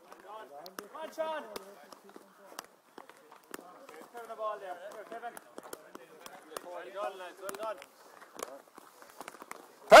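Faint, overlapping voices of boys and coaches talking away from the microphone. Scattered sharp taps and clicks run throughout: hurleys and sliotars knocking during the hurling drill.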